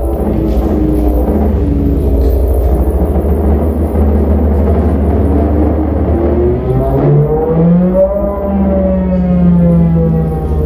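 Modular synthesizer playing abstract electronic music: a steady low drone under layered pitched tones that slide in pitch. About six seconds in, one tone rises slowly, then falls back over the last couple of seconds.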